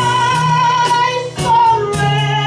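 A woman singing through a microphone over instrumental accompaniment: she holds one long wavering note, breaks off briefly, then starts a new phrase.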